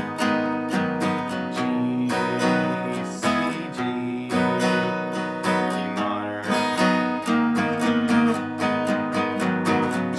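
Steel-string acoustic guitar, capoed at the fourth fret, strummed in a steady down-up rhythm with single-note licks worked in around the chords.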